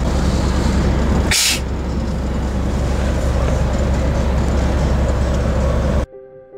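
Steady road and engine rumble inside a moving vehicle's cabin, with a short sharp hiss about a second and a half in.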